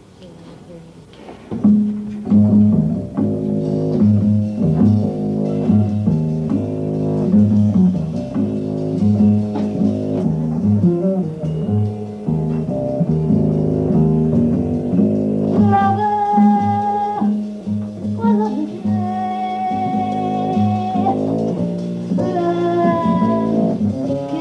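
Small jazz combo starts playing about two seconds in: piano chords over plucked double bass. A woman's voice comes in a little past halfway, singing long held notes.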